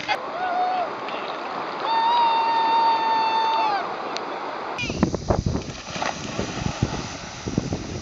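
Shallow river water rushing and splashing through a small rapid. From about five seconds in the rush becomes louder and lower, with irregular knocks. Earlier, a person's voice calls out in one long held note about two seconds in.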